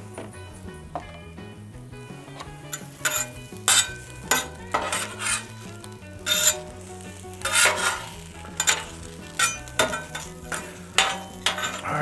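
Metal spatula scraping and clinking on a flat-top griddle as tater tots are pushed and turned, over a light sizzle. After a quieter start, about a dozen short scrapes and taps come at irregular intervals from about three seconds in.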